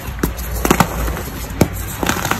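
Blocks of reformed gym chalk being crushed and rubbed together by hand, giving a few sharp, dry crunching snaps. The loudest two come close together a little under a second in, with another near the end, over steady low background noise.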